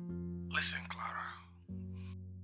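Background film score of sustained low chords, changing to a new chord about 1.7 s in. About half a second in comes a short breathy, whispered voice sound, louder than the music.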